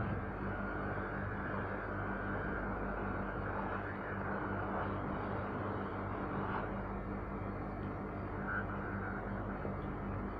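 Hot air rework station blowing steadily over a circuit board, a continuous hiss with a low hum underneath, while it heats the area under a RAM chip to soften the solder.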